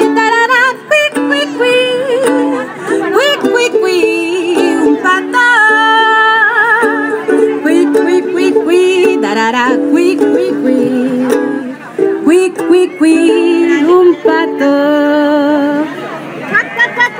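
Ukulele strummed in steady chords while a woman sings a children's song, her voice wavering in pitch above the strings.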